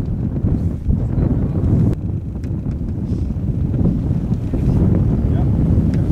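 Wind buffeting the microphone: a steady, loud low rumble with no distinct events.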